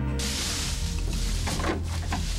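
A dramatic music cue breaks off just after the start and gives way to a steady rush of wind, a stiff breeze that has suddenly come up.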